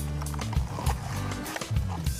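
Background music with a low bass line and a regular beat.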